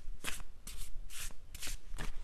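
A deck of tarot cards being shuffled by hand: a run of short papery swishes, about two a second.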